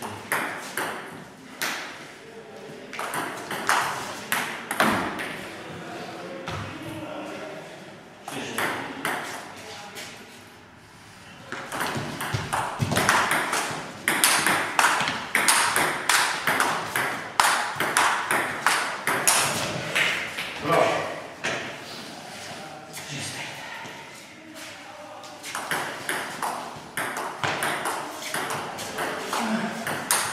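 Many quick, sharp clicks of a ball in play being struck and bouncing, with voices talking throughout and a quieter spell about ten seconds in.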